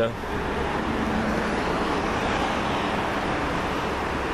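Steady road traffic noise, an even continuous rush with no single event standing out.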